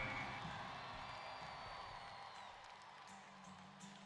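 Arena sound with faint background music, fading steadily down.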